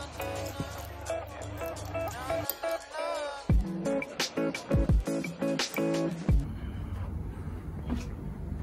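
Background music with heavy bass drum hits. It stops about six seconds in, leaving a low, steady hum.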